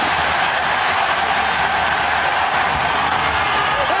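Large stadium crowd cheering loudly and steadily through a long jumper's run-up and jump.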